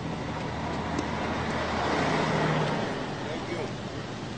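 City street traffic with background chatter; a car passes by, swelling to its loudest about two seconds in and fading away.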